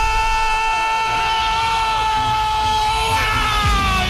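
A radio football narrator's drawn-out goal cry, one long steady shouted 'gol' held on a single pitch into the microphone. It breaks off near the end.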